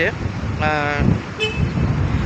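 A vehicle horn sounds once, a steady toot of about half a second, over a continuous low traffic rumble.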